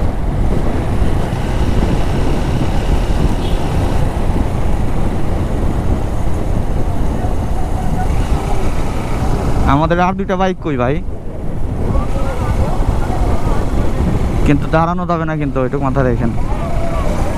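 Steady wind rush over the camera microphone on a motorcycle ride at speed, mixed with road and engine noise. A voice cuts in briefly about ten seconds in and again near the end.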